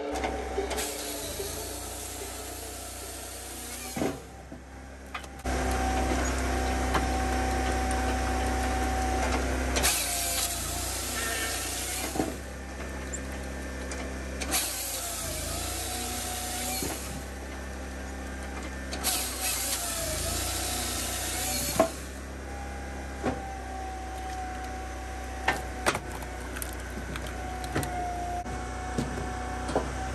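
Firewood processor running: a steady engine drone with a hydraulic tone that dips in pitch and recovers several times as the machine takes load. Stretches of hissing switch on and off, and a few sharp knocks and cracks of wood come through, loudest about 22 seconds in.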